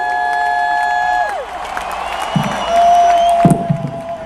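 Sustained electric guitar feedback tones through the arena PA, held steady and then diving down in pitch a little over a second in, over a cheering crowd. Another held tone comes in partway through, with a couple of low thuds.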